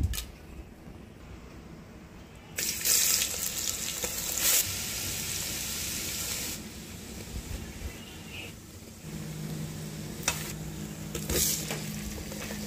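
Whole spices and onions sizzling in hot oil in a steel pan. The sizzle starts suddenly a few seconds in and is loudest for about four seconds, then settles to a quieter, steady sizzle.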